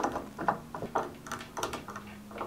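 Brass drawer knob being unscrewed by hand from an oak drawer front: a run of small, irregular metal clicks and scrapes as the knob turns on its threaded bolt.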